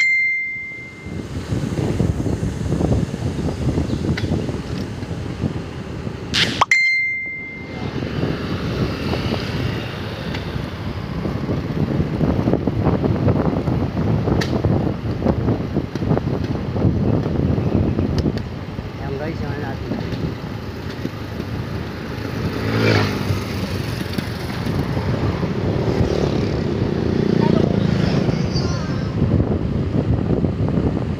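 Wind buffeting the microphone of a phone on a moving bicycle: a steady low rushing rumble. A sharp click with a brief high ding comes at the start and again about six seconds in, each followed by a short drop-out.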